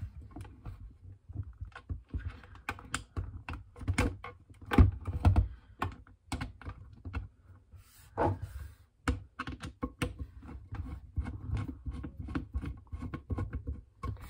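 Irregular small clicks and knocks of hands working screws and face mask clips against a Schutt F7 football helmet's plastic shell and metal face mask, while the face mask is being screwed on.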